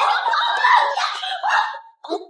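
Women's raised, strained voices in a scuffle: angry shouting mixed with a woman's tearful cries as she is grabbed and pulled.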